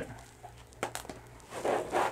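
Plastic paintball pod being pushed into the fabric pouch of a paintball harness: a couple of light knocks just under a second in, then a brief rustle of the pod rubbing against the fabric and elastic near the end.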